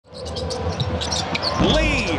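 Basketball game sound in an arena: a ball bouncing on the hardwood and sneakers giving short high squeaks over a steady crowd murmur, with a voice rising near the end.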